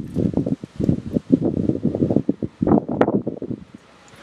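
Wind buffeting the camera microphone in irregular low rumbling gusts, with one sharp click about three seconds in.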